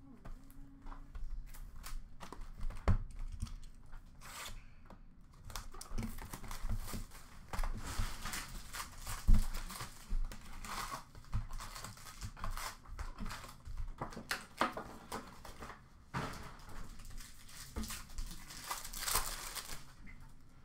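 Foil wrappers of Upper Deck Series 1 hockey card packs being torn open and crinkled while the cards are handled, in long stretches of rustling and small clicks. Two sharp knocks stand out, the loudest about nine seconds in.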